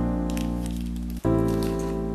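Background piano music of sustained chords, a new chord struck about a second and a quarter in. Over it, light crinkling of a clear plastic sleeve being slid off a small makeup brush.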